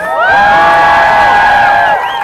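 Crowd cheering and whooping together. Many voices hold one long shout that rises in pitch at the start and drops away near the end.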